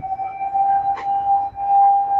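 A single steady high tone, held without a break, with a faint click about a second in.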